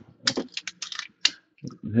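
A quick run of about eight light, sharp clicks and taps in just over a second.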